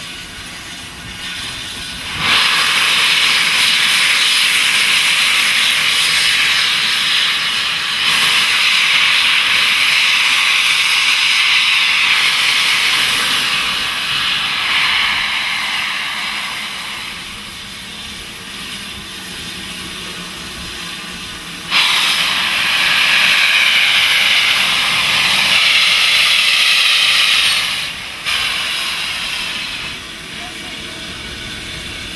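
Steam hissing loudly from the open cylinder drain cocks of BR Standard Class 7 Pacific 70000 Britannia, in two long blasts that each start suddenly, one a couple of seconds in and one about two-thirds of the way through, with a short break near the end.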